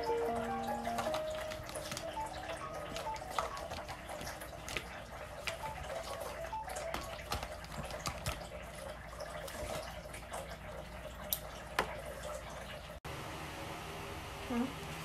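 A few notes of a melody in the first second or so, then a steady watery hiss with scattered drips and small clicks, broken off abruptly near the end.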